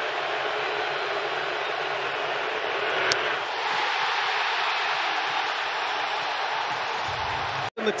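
Ballpark crowd cheering, a dense steady roar of many voices that swells slightly after a single sharp pop about three seconds in.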